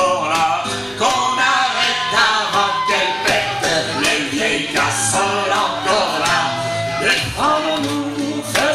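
A small group singing a French song, with a concert flute playing the melody and hands clapping a steady beat about twice a second.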